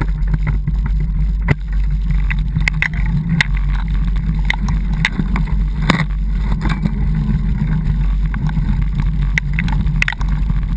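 A vehicle riding along a bumpy dirt trail: a steady low rumble throughout, with frequent sharp rattles and knocks as it goes over the rough ground.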